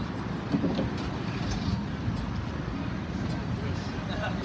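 Steady low rumble of a vehicle engine running, with people talking in the background.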